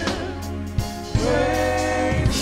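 Live gospel praise and worship singing: women's voices holding notes with vibrato, in harmony, over a steady bass line with occasional drum hits.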